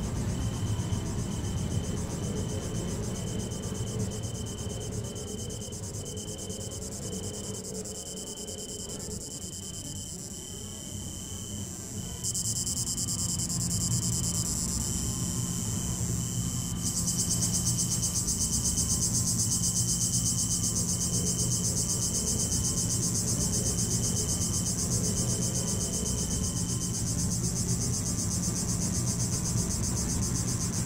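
Electronic music from loudspeakers: a short, high, cricket-like chirp repeating about once a second over a low drone, stopping near the end. A band of high hiss cuts in sharply about twelve seconds in and grows broader and louder about five seconds later.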